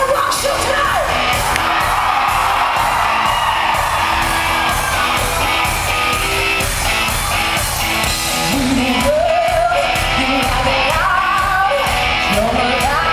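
Live rock band playing with a woman singing lead over drums and electric guitar, recorded from the audience in a large hall, with yells from the crowd over the music.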